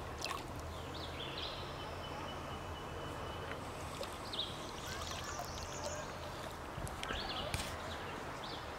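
Quiet water sounds around a kayak gliding down a creek, with a few faint splashes and small clicks. Birds give thin high calls over a faint, steady low hum.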